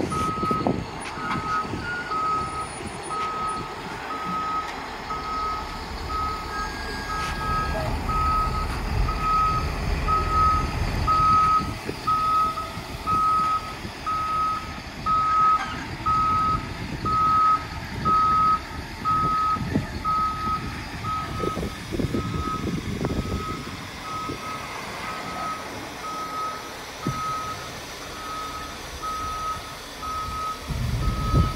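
Caterpillar 725C articulated dump truck's reverse alarm beeping steadily at one pitch, a bit more than one beep a second, over the low rumble of its diesel engine, which swells at times as the truck drives down off a lowboy trailer.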